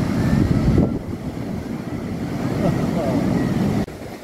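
Wind buffeting the microphone over the rumble of breaking surf, dropping in level about a second in.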